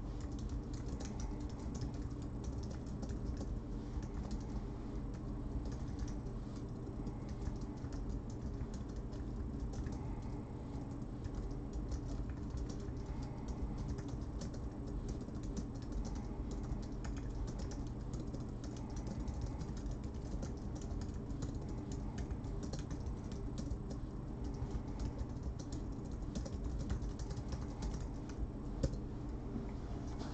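Computer keyboard being typed on: irregular runs of key clicks, over a steady low hum.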